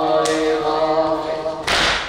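A male latmiya reciter chanting one long held note into a microphone, with a short burst of noise near the end.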